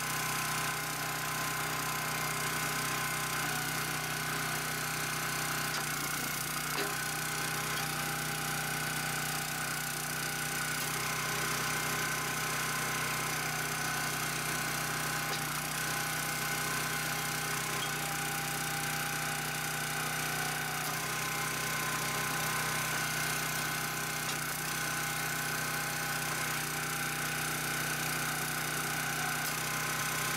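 Small gasoline engine of a County Line 25-ton log splitter running at a steady speed.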